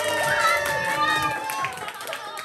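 A group of children singing together, holding a long final note, with some hand-clapping; the singing fades out near the end.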